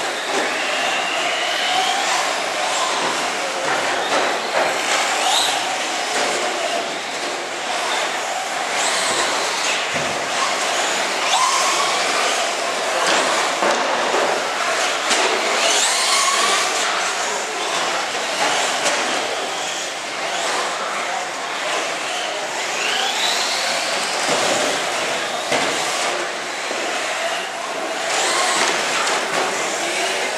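Electric radio-controlled cars, among them a Traxxas Slash 4x4 short-course truck, running on an indoor track: their motors whine, the pitch rising and falling again and again with the throttle, over a steady noisy background.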